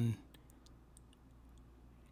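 Chef's knife slicing fresh ginger on a wooden cutting board: a few faint, quick taps of the blade against the board, mostly in the first second.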